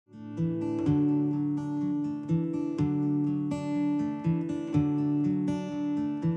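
Solo acoustic guitar picking the opening of a song: notes struck about every half second and left ringing over a sustained low bass line. It fades in over the first half second.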